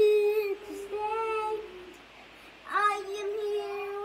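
A young boy singing unaccompanied, holding long wordless notes: three held notes in a row with short breaks between, the last starting near the three-second mark.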